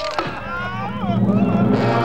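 A short knock, then a cartoon man's low angry growl through gritted teeth, starting about half a second in and growing louder as his rage builds.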